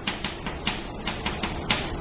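Chalk clicking against a blackboard as it writes and marks, a quick irregular series of short taps, about four or five a second.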